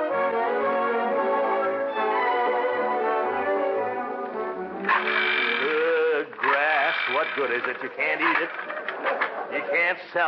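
A short orchestral music bridge with brass plays sustained chords and ends about five seconds in. A man's voice then takes over, talking or muttering.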